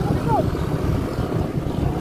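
Steady low wind and road rumble on the microphone of a moving motorcycle, with a brief vocal sound about a third of a second in.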